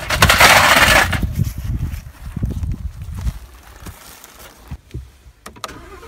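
A loud scraping crash lasting about a second, followed by two or three seconds of irregular clattering and knocks that die away.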